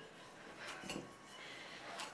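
Hands kneading dough in a ceramic mixing bowl: faint soft pressing and rubbing, with a few light knocks against the bowl around the middle.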